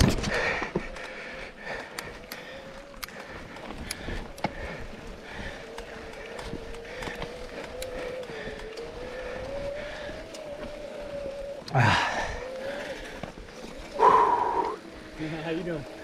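Bikes rolling over a loose dirt trail, with scattered clicks and crunches from the tyres and a steady whine that wavers slightly in pitch through most of the stretch. Two short loud bursts come near the end.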